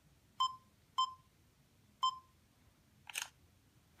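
Self-timer countdown of a camera app on an iPad: three short electronic beeps, then the camera shutter sound about three seconds in as the photo is taken.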